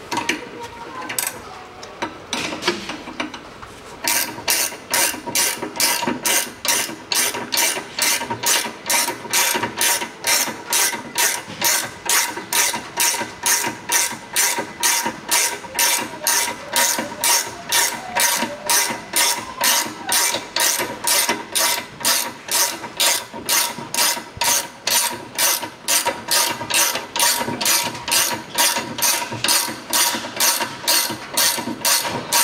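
Ratcheting spanner clicking steadily, about two clicks a second, starting a few seconds in. It is turning the nut on a threaded bushing press that draws a new rubber-metal silent block into the rear trailing arm of a Toyota Camry XV40.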